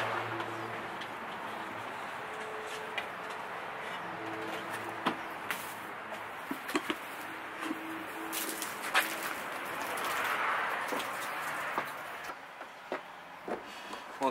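Steady outdoor background noise, with scattered short clicks and knocks as equipment and fittings at the back of a van are handled.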